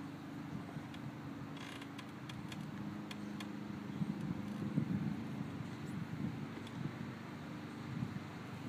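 A walk-behind lawn mower with its engine off being pushed slowly over grass: faint clicks and creaks from its wheels and frame over a steady low hum.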